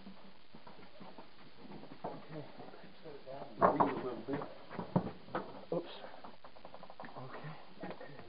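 Low, muffled voices of men straining to hold a heavy telescope mirror cell in place, with a couple of sharp knocks from handling it, the clearest about five seconds in.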